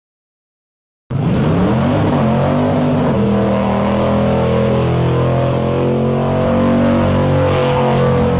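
Car engine revving hard during a burnout, starting abruptly about a second in. The pitch climbs over the first two seconds, then holds at high revs over the hiss of a tyre spinning on pavement.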